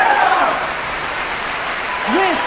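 Audience applauding, a dense even clatter of many hands. A voice shout trails off in the first half second.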